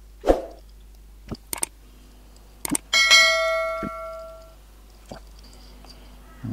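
Subscribe-button overlay sound effect: a few sharp clicks, then about three seconds in a bright bell ding that rings and fades out over about a second and a half.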